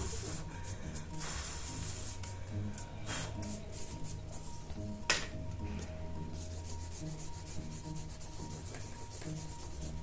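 Eraser rubbing across drawing paper in short repeated strokes, lifting pencil graphite from a portrait, with one sharp tap about five seconds in.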